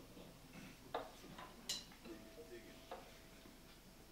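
Near silence broken by a few faint clicks and knocks of instruments being handled, with a faint held tone in the second half.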